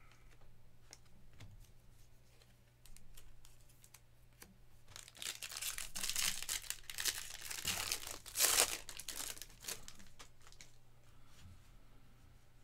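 A 2024 Bowman Baseball jumbo card pack's wrapper being torn open and crinkled, a dense rustling that builds from about five seconds in and is loudest near eight and a half seconds. Before it come a few soft clicks of cards being handled.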